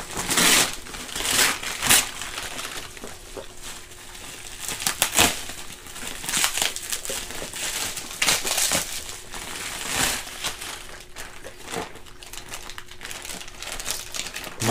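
Gift wrapping paper and a clear plastic bag rustling and crinkling as a present is unwrapped by hand, in irregular bursts of crackle.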